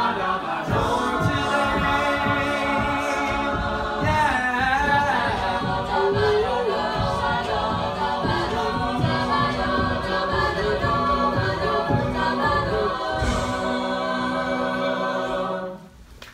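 Mixed-voice a cappella group singing held chords over a steady low vocal beat; the song ends with a sudden cutoff right at the end.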